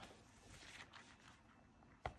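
Near silence: faint soft rustling of a thin latex sheet being handled, about half a second to a second in.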